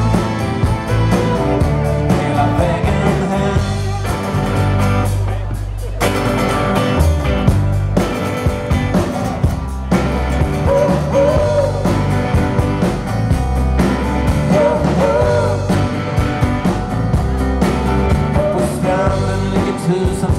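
Live rock band playing: acoustic and electric guitars over bass and drums, with a pitched lead line wavering above the band.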